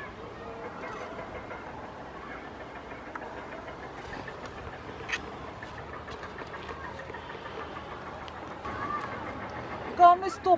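Steady low noise throughout, with a single sharp click about five seconds in and a faint voice near the end.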